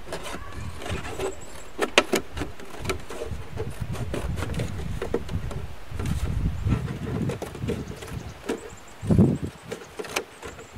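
Thin plastic juice jug being handled and flexed, giving a string of irregular sharp clicks and crackles, over a low rumbling background.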